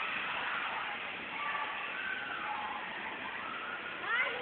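Volvo B12R coach's six-cylinder diesel engine running as a steady noise while the double-decker is manoeuvred slowly into the garage.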